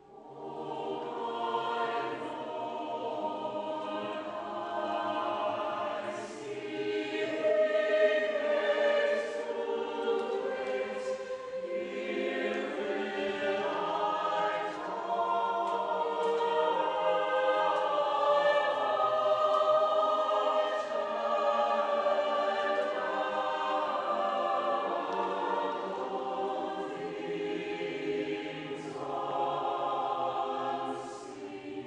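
A church choir sings a sacred piece in many parts, holding long chords that shift from one to the next. It begins right after a brief hush.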